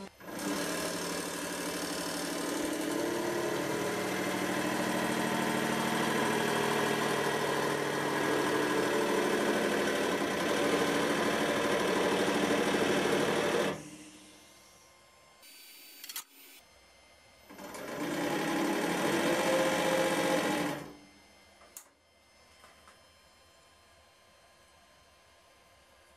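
A 100-ton hydraulic press's pump motor runs with a steady whine for about thirteen seconds while the ram crushes a cube of compacted aluminium foil at full pressure, then stops. After a short pause with a few faint clicks, it runs again for about three seconds as the ram is raised.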